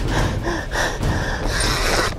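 A man breathing hard and gasping while straining against a heavy fish on a bent rod, with wind buffeting the microphone.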